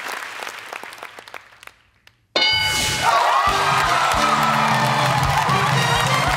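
Studio audience applause dying away over about two seconds, then after a brief silence a loud upbeat music track with a steady beat cuts in suddenly.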